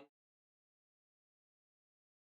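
Silence: the sound track is blank.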